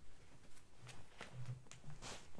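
Faint soft knocks and rustles of a person moving about and picking up a hardback Bible, a few light thumps spread through the quiet.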